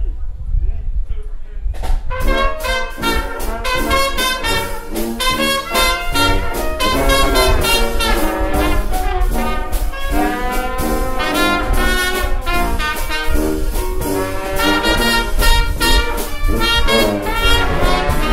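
Traditional jazz band (cornet, clarinet, trombone, sousaphone, piano and drums) playing together, the full ensemble coming in about two seconds in with the brass and clarinet over a steady beat.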